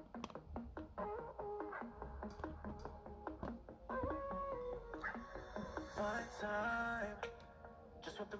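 Music played through an iPhone 6s Plus's built-in speaker at half volume, sounding a bit tinny.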